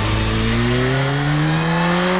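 Suzuki Katana's GSX-R-derived inline-four engine accelerating, its note rising steadily in pitch as the bike pulls through a bend.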